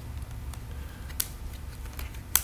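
Faint handling of rubber bands being stretched and wrapped around a wooden racer body, with one small sharp click about a second in, over a low steady hum.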